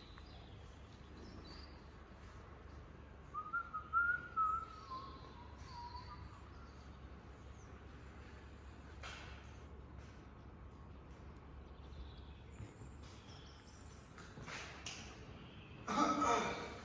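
Quiet background with a faint low hum. A few seconds in, a short wavering whistle of a few notes lasts about two and a half seconds and drops in pitch at its end.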